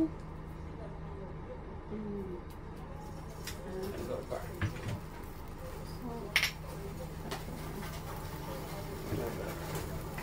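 Light clicks and knocks of a glass oil bottle and spice jars being picked up and set down on a kitchen counter, the sharpest knock about six seconds in, over a steady low hum.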